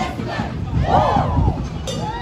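A crowd of voices shouting, with one long yell that rises and falls in pitch about a second in.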